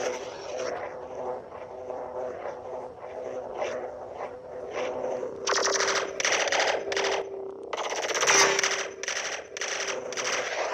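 Lightsaber (Xenopixel V3 soundboard) playing its sound font through the hilt speaker: a steady hum with swelling swing sounds, then from about five and a half seconds a run of loud crackling bursts, about two a second.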